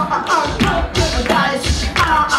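Live pop music: women singing into microphones over a small band with a steady percussion beat.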